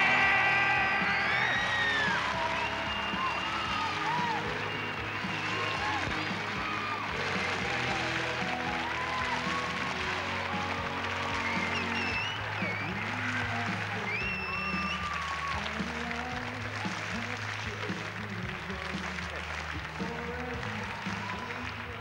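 Audience applause mixed with music with held bass notes, loudest just after the winner is announced and slowly dying down.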